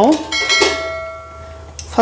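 Stainless-steel idli plate stand set down into the idli pot with a clink, the metal ringing with a clear bell-like tone that fades away over about a second and a half.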